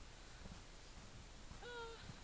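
Near quiet, then near the end one short, steady high note from a person's voice, an 'ooh'-like hum lasting about a third of a second.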